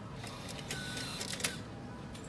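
Whirring mechanism inside a Seven Bank ATM runs for about a second and a half, with a brief whine in the middle and a few clicks as it stops.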